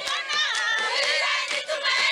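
A crowd of women cheering and shouting together, many high voices overlapping.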